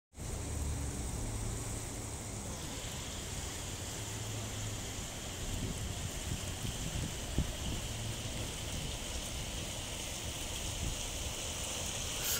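Bow River current rushing and rippling past a bridge pier and over shallow rapids: a steady hiss of flowing water with a low rumble underneath.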